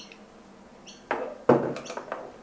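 A drinking glass of water set down onto a desk with a short knock about one and a half seconds in, after a second of quiet room tone.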